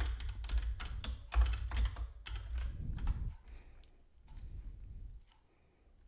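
Typing on a computer keyboard: a quick run of keystrokes lasting about three seconds, entering a short name into a text field.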